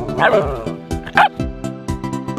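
A dog barking twice, short sharp calls over steady background music.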